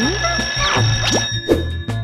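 A telephone ringing over background music: a steady high-pitched ring that stops about a second and a half in, as the receiver is picked up.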